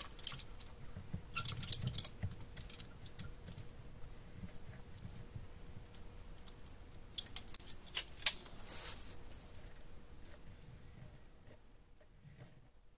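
Manual caulking gun being worked: clusters of sharp clicks from the trigger and plunger rod as silicone is pushed out along the edge of a sump pump cover, near the start, about a second and a half in, and again a few seconds later.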